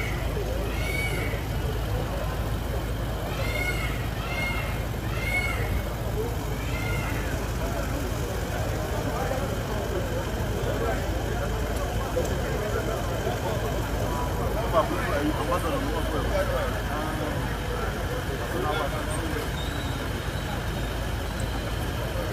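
Outdoor crowd chatter over a steady low rumble. In the first seven seconds a high call that rises and falls repeats many times.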